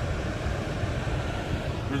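Steady low rumble of road and engine noise heard inside the cabin of a car driving along a street.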